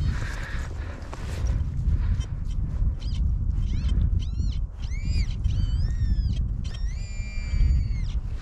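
Birds calling: a string of short cries that rise and fall in pitch over the second half, then one longer, steadier call near the end, over a steady low rumble of wind on the microphone.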